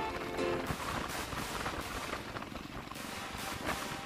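Background music: a few held melodic notes at the start, then a steady beat of about two per second.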